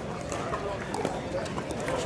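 Indistinct talk from several people with a few faint, sharp pops of pickleball paddles hitting balls.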